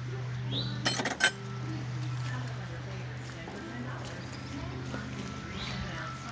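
A few quick metallic clinks about a second in, tools or parts knocking against metal in a car's engine bay, over a steady low hum.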